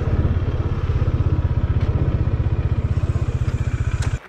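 Motorcycle engine running steadily at low revs, a fast even low pulse, as the bike rolls slowly between parked cars and pulls up.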